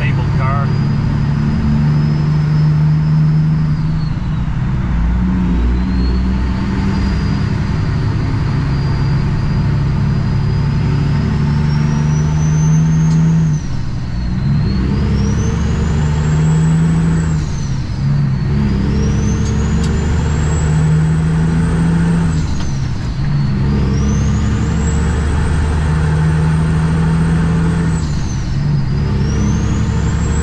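2008 Kenworth W900L diesel tractor pulling a loaded trailer, heard from the cab as it accelerates up through the gears. The engine note climbs and drops back at each of several upshifts, and a high turbo whistle rises with each gear and falls away at each shift.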